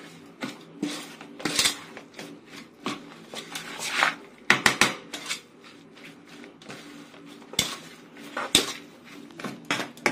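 A metal spoon scrapes and clinks against the side of an aluminium pot while a grated salad is tossed and mixed. The strokes are irregular, with the loudest knocks about four and a half seconds in and again near the end.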